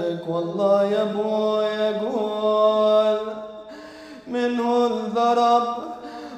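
A man's voice chanting a lament in a slow, ornamented melody, holding long notes that bend up and down, with a short break about four seconds in.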